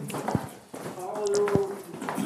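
Footsteps of several people walking down stone steps: shoes knocking on the stone, with a few sharp steps standing out.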